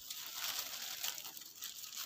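Soft rustling and crinkling of leaves and a thin plastic glove as a hand pushes through vine foliage.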